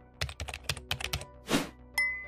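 Keyboard-typing sound effect: a quick run of key clicks, then a short swish and a sharp click near the end, over faint background music.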